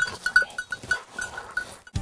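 Bell on a bird dog's collar jingling in quick, uneven strokes of one fixed pitch, with faint rustling; it stops abruptly just before the end.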